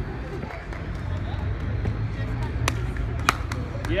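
Low, steady city-street rumble with faint chatter from onlookers. A few sharp clicks come in the second half.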